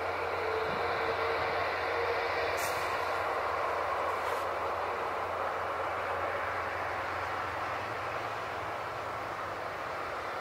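Airbus A380 jet engines heard from a distance as a steady, even rumble while the airliner is out of sight behind trees. Two brief high hisses come a few seconds in.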